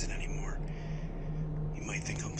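A hushed, whispered voice is heard at the very start and again near the end, over a steady low hum.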